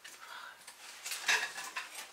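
Light clicking and clattering of camera gear being handled on its tripod as it is packed up, with the loudest clatter a little past a second in.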